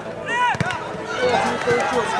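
Football spectators shouting and calling out close by, with a single sharp thud about half a second in.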